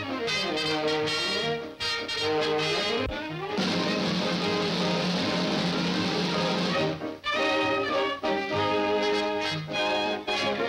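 Brass-led cartoon orchestra music with sliding, trombone-like glides. From about three and a half seconds in to about seven seconds, the music gives way to a loud, steady whirring sound effect for a spinning stool, and then the brass music comes back.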